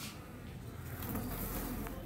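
Honeybees buzzing as a soft, steady hum, with a light click near the end.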